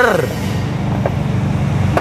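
An engine idling steadily, a low, even rumble with a fast, regular pulse.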